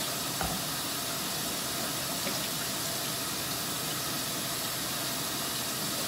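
Kitchen tap running steadily over quinoa in a fine-mesh strainer as the grain is rinsed.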